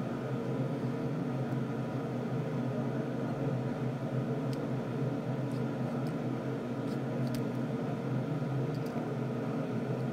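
A steady low hum of background noise, like a fan or appliance running, with a few faint light clicks of small plastic toy pieces being handled.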